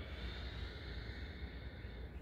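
A slow, steady exhale, its soft breathy hiss fading out near the end, over a low steady room hum.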